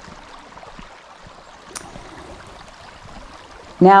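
Steady rushing of a small stream, with one faint click a little under two seconds in.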